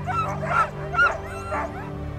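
Harnessed Alaskan husky sled dogs giving a run of short, high-pitched excited yelps, about four in two seconds, the sign of dogs eager to run before the start.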